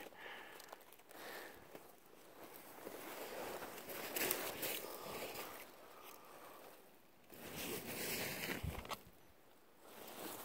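Footsteps crunching slowly through snow, with clothing and brush rustling, faint and uneven, going quiet near the end.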